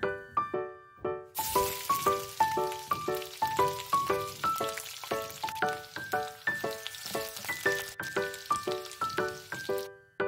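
Sliced onion and green chillies sizzling in hot mustard oil in a wok, starting suddenly about a second and a half in and cutting off just before the end. Background music of short single notes in a light melody plays throughout.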